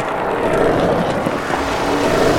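Skateboard wheels rolling fast over pavement: a steady, rough rolling noise.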